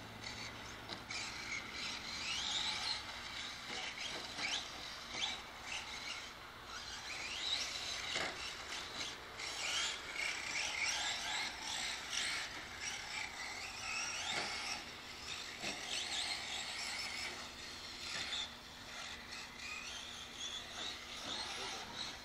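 Radio-controlled cars running on a dirt track, their motors whining and rising and falling in pitch as they speed up and slow down, several overlapping.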